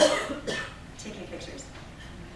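A person coughing: a sharp burst at the very start and a shorter one about half a second later, then quieter room sound with a few faint ticks.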